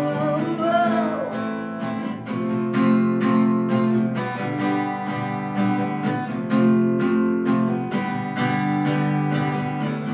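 Acoustic guitar strummed in repeated chords, with a sung note gliding and fading out in the first second or so.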